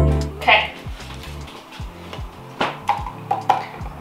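Background music ending about half a second in, then scattered light knocks and clicks from handling a wooden plank and a plastic container.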